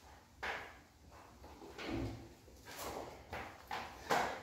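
Interior doors being worked: several short, faint knocks and clicks as one door is pushed shut and another is opened.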